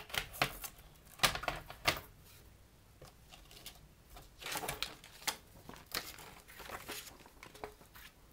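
Handling noises of a picture frame being taken apart by hand: scattered clicks, knocks and rustles as the back panel comes off, the paper insert is lifted out and the glass is handled, with a busier stretch in the second half.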